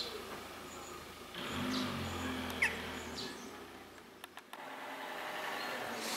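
Quiet outdoor ambience with a single short bird chirp about two and a half seconds in. A low hum swells and fades in the middle, and a few faint clicks come later.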